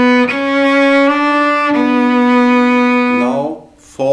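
Solo cello played with the bow: a short phrase of four held notes on the lower strings, the left hand shifting from the half position back to the first position. The notes stop about three and a half seconds in.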